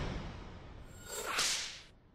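Whoosh sound effect of an animated logo transition: a rushing swoosh fades away, then a second, sharper swish swells and dies out about a second and a half in.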